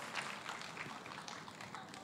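Scattered audience clapping, dying away.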